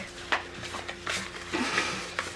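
Playing cards being handled on a table: a light tap, then a soft sliding rustle near the end.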